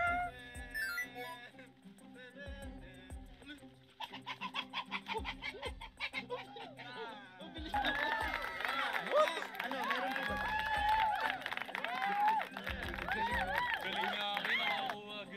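Background music with excited shouting voices, getting louder about eight seconds in.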